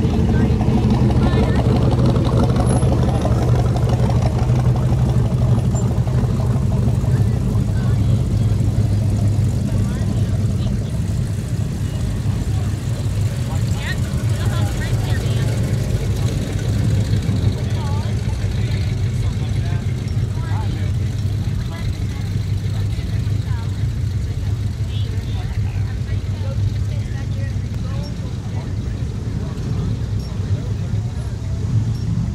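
Car engines running at low speed as cars creep past in a slow line, making a steady low drone that is loudest in about the first ten seconds, with people talking in the background.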